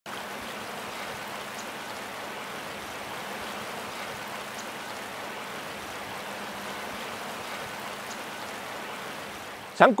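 Shallow river water running steadily over stones, an even rushing with no change in level.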